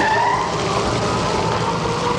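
A small motorized utility cart driving off, its motor running steadily, with a few held tones over it.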